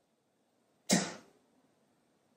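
A single short cough, sudden and loud, fading within about half a second.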